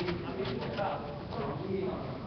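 Indistinct, muffled voices talking in the background, with a couple of light clicks in the first half second.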